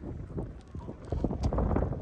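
Soccer game on grass: a quick run of soft thumps from running footfalls and ball touches, with a loud low rumble coming in about halfway through.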